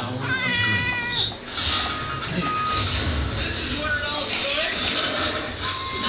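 Domestic cat meowing: one long meow in the first second, then a shorter call about four seconds in.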